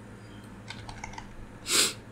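A few light clicks of a computer keyboard and mouse, followed near the end by one short, louder burst of noise.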